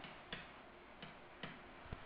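Four faint, sharp clicks of a stylus tapping on a writing tablet during handwriting, over a low steady hiss.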